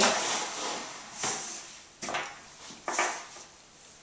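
Cloth rustling and brushing over a wooden tabletop as a length of fabric is smoothed and folded double, in a few short swishes about a second apart.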